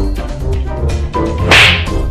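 Background music playing, with a short, loud swishing burst about one and a half seconds in, the loudest thing here, which falls away quickly.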